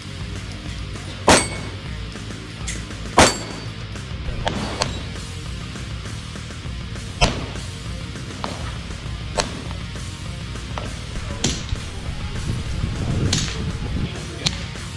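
Pistol shots fired one at a time at irregular spacing, about a dozen in all, the loudest about a second, three seconds and seven seconds in, with fainter shots between. Background music with a steady bass runs under them.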